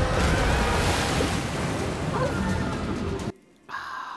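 Soundtrack of an animated show: a loud rush of crashing seawater bursting through a ship's corridor wall, under dramatic score music. It cuts off suddenly a little over three seconds in.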